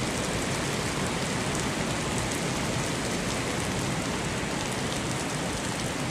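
Heavy rain pouring steadily onto wet asphalt, an even hiss of falling water.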